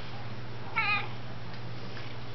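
A domestic cat gives one short, high meow with a wavering pitch a little under a second in.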